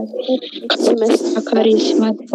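A person speaking.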